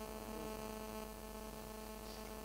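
Steady electrical hum in the sound system: a low, even buzz with a row of evenly spaced overtones, heard as hissing. It is suspected to be interference from a mobile phone.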